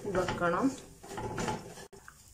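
Wooden spatula stirring and scraping a dry shredded beef masala filling in a metal pan, with a few sharp scrapes about a second and a half in. A voice is heard briefly at the start, and the sound cuts off suddenly just before the end.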